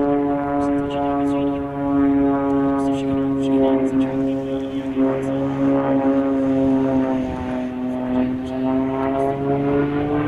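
Piston engine and propeller of an aerobatic monoplane droning overhead, steady and strongly pitched. Its pitch sinks slowly and starts to climb again near the end as the aircraft manoeuvres.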